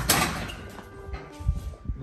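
Kicks and punches landing on a freestanding punching bag: one loud hit at the start, then two duller thumps about one and a half and two seconds in.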